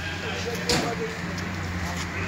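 Street ambience: a motor vehicle engine running with a steady low hum, voices nearby, and one brief sharp knock about a third of the way in.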